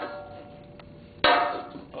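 Metal clanks from a Case 222 garden tractor's round metal air cleaner housing being worked loose and lifted off: the ringing of one clank fades out, and a second sharp clank about a second in rings and dies away.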